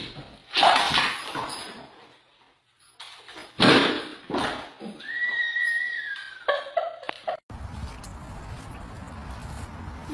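Dogs making noise in a house: a loud sudden call just after the start and another about three and a half seconds in, then a high drawn-out whine that falls slightly in pitch. A couple of seconds before the end the sound changes abruptly to a steady low rushing noise.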